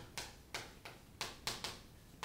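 Chalk writing words on a chalkboard: a quick run of short tapping strokes, about four or five a second.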